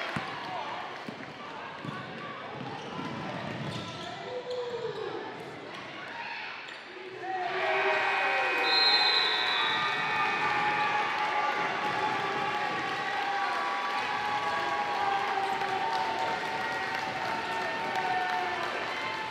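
Live sound of a high-school basketball game in a gym: a basketball bouncing on the court under shouting voices of players and spectators. The crowd noise gets clearly louder about seven and a half seconds in.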